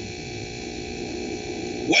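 Steady hiss and low hum of the recording's background noise in a pause in a man's speech; his voice comes back at the very end.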